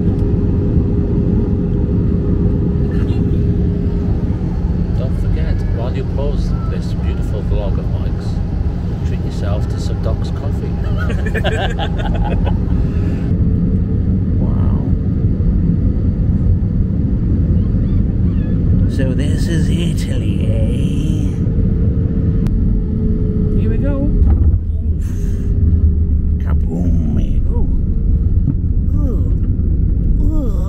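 Cabin noise of an Airbus A320-family jet airliner on final approach: a steady loud rumble of engines and airflow with a steady hum running through it. Near the end there is a sharp bump and the low rumble grows louder.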